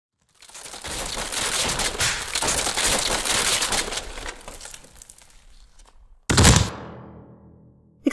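Crashing and smashing sound effects of furniture being wrecked: a dense clatter of bangs and breaking for about four seconds that tails off, then one loud crash a little after six seconds in that rings away.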